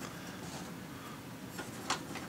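Quiet room noise with one short click near the end, from a hand working the height adjustment of the blade guide post on a switched-off Ryobi BS904G band saw.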